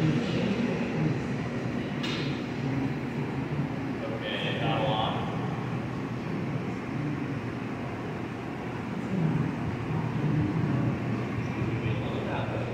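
Steady rushing noise of a glassblowing studio's gas-fired furnaces and glory holes running, with a sharp click about two seconds in and voices in the background.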